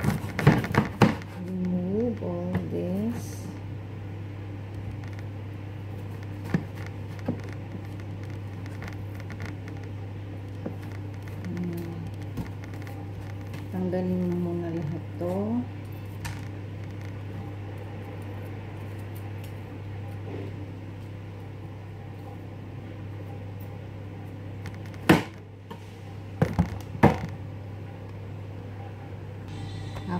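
Chef's knife cutting bitter gourd on a plastic cutting board: a few sharp knocks of the blade hitting the board, bunched near the start and again near the end, over a steady low hum.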